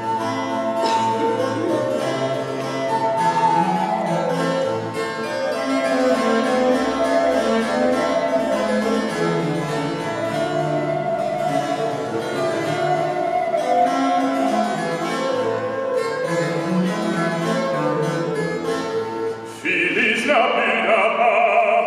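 Baroque trio passage with no voice: a traverso (wooden baroque flute) plays a held, ornamented melody over a viola da gamba bass line and plucked harpsichord chords.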